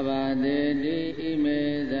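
A Buddhist monk's voice chanting in long held notes that step up and down in pitch, with a brief break about a second in.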